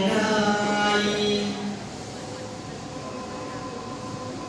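Thai-style singing in recorded backing music: a long held, slightly wavering note that stops about two seconds in, leaving a quieter, steady musical background.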